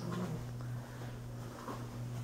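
A steady low electrical hum, one even tone with a fainter higher one above it, with small faint handling noises on top.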